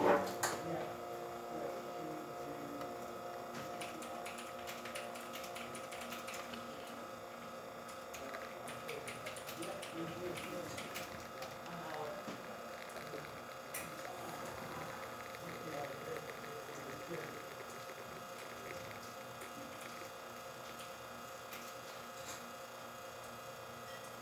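Quick Mill Silvano espresso machine's vibratory pump running steadily at about nine bars while a shot of espresso pulls, a steady buzzing hum.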